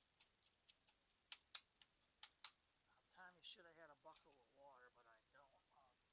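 Near silence with a few faint scattered clicks as loose potting soil is handled, then a quiet, indistinct voice from about halfway through.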